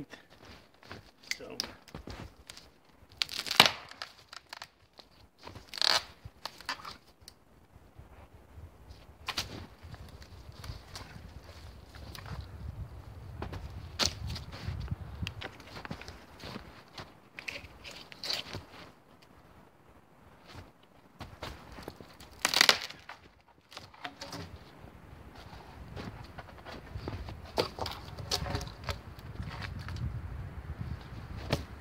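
Dead wood cracking and snapping as a pole is levered between two tree trunks and broken by hand, with several sharp cracks, the loudest about three and a half seconds in and another loud one about 23 seconds in. Rustling and handling of the sticks between the cracks.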